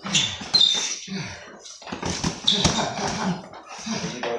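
Boxing sparring on a gym floor: sneakers squeak on the floor and gloves land with sharp smacks several times, with brief bits of voice between them.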